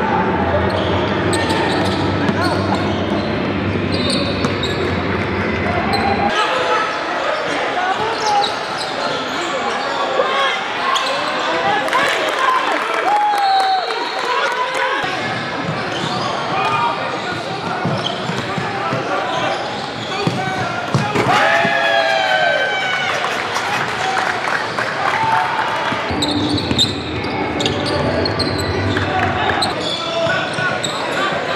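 Live gym sound of a basketball game: a ball bouncing on a hardwood court amid players' and spectators' voices, echoing in a large hall.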